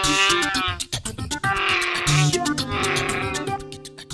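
Three drawn-out Chewbacca-style Wookiee roars over upbeat background music.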